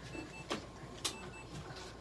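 An electronic beeper sounding short high double beeps about once a second, with two sharp clicks between them.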